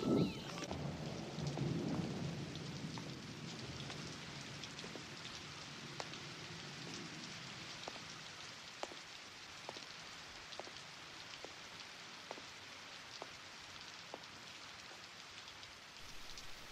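Steady rain hiss with a low rumble in the first couple of seconds. From about six seconds in, faint regular knocks come a little under a second apart.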